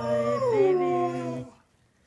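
Greyhound howling: one long high note that slides down in pitch about half a second in and breaks off about a second and a half in. A low, steady held note sounds under it, as of a person singing along.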